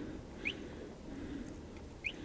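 A bird chirping twice, each chirp short and rising in pitch, about a second and a half apart, over a faint low background rumble.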